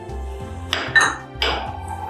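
A kitchen utensil clinking against a bowl three times, the middle clink with a bright ring, over steady background music.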